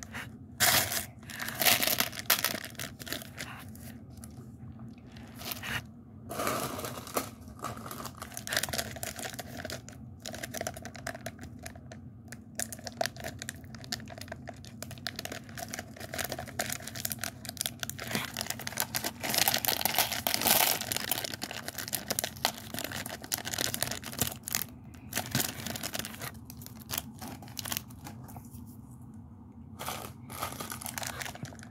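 Plastic candy packet being crinkled and torn open by hand, an irregular run of crackles that grows busiest about two-thirds of the way through.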